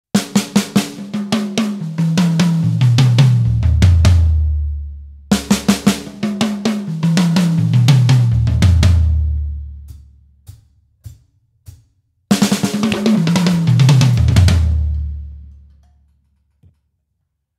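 Drum fill on a Pearl Masterworks kit, played three times: each run opens with quick strokes, steps down the toms from high to low and ends on the deep low drums left ringing. A few single hits fall between the second and third runs.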